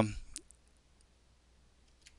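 A few faint computer keyboard clicks, a sharper one about a third of a second in and lighter ticks over the next second.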